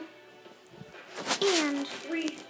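A television playing music in the room, with a short, loud voice-like sound whose pitch falls, about a second in.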